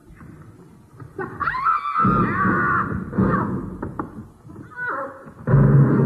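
Several stage performers crying out and shouting, with a high wavering cry from about a second in, then loud heavy thuds and rumbling about two seconds in and again near the end as music begins to build.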